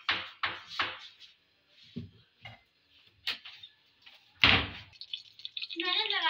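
Cumin seeds sizzling and crackling in hot oil in a metal karahi: short, irregular hisses and pops, with one louder knock about four and a half seconds in.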